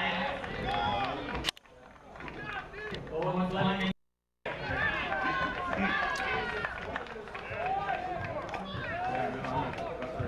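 Indistinct voices talking at a football game, with no clear words. About a second and a half in the sound drops away, and around four seconds in it cuts out completely for a moment before the voices resume.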